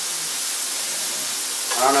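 Pancetta frying in olive oil in a pan: a steady sizzle.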